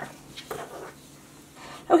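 Faint handling of paracord: soft rustling of nylon cord and a woven collar being turned in the hands, with a small tick about half a second in.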